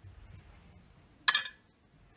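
A single sharp clink from a kitchen knife, a little over a second in, as olives are cut on a plastic cutting board; quiet room tone around it.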